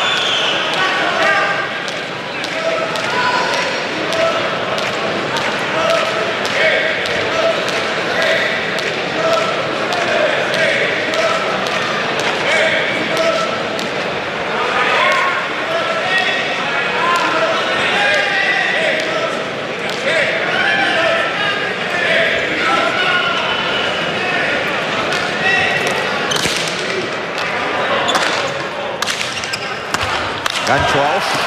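A hard hand-pelota ball bouncing on the fronton floor between points while voices murmur. Near the end come sharp cracks of the ball off hand, wall and floor as a rally starts.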